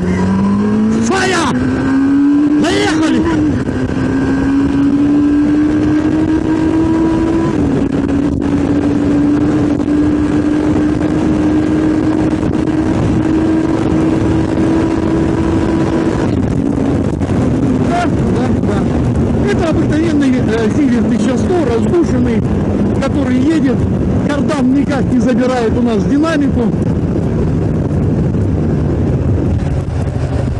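1986 Kawasaki GTR1000 Concours inline-four engine under hard acceleration through the gears. Its pitch climbs, drops at a shift about three seconds in and again a few seconds later, then keeps climbing until about halfway through. There it falls back to a lower, steady drone.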